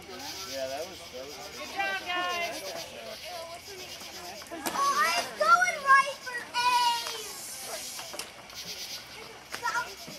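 Children's high-pitched voices calling out, shouting and laughing. The loudest calls come from about five to seven seconds in.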